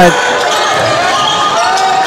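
A basketball bouncing on a hardwood gym floor over steady gym crowd noise.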